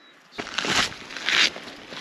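Footsteps crunching on a wet, stony path close to the microphone: two loud steps, the first about half a second in and the second just after a second, over a lighter scuffing of grit.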